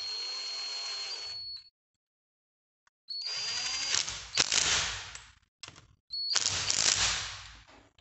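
Cordless power driver running a bolt of the cam-chain tensioner into a motorcycle engine's cylinder, in three short runs. The first run is a steady high whine. The second and third are louder and rougher as the bolt draws tight.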